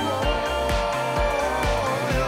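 The anime's ending theme song: a pop song with a steady drum beat under a sung melody with a held, wavering note.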